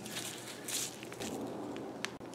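Quiet scraping and rustling as a slotted screwdriver turns the cable anchor screw on a bicycle's rear derailleur, held in gloved hands, with a brief louder scrape near the middle.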